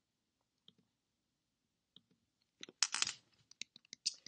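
Faint clicks from operating a computer to change a weather map: two single clicks, a short rustle about three seconds in, then a quick run of clicks at about four to five a second.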